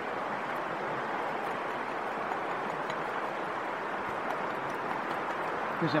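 Steady rush of flowing river water, even and unbroken, with faint light scratches of a hand tool carving soft tufo stone.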